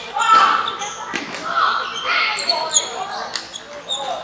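Table tennis ball knocking off paddles and the table, about five sharp, irregularly spaced clicks, over people talking in the background.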